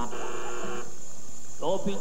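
A quiz-show contestant's buzzer being tested: one steady electronic buzz tone that lasts under a second and cuts off sharply.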